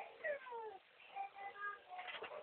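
A baby's high-pitched vocal sounds: a falling squeal, then a few short held notes.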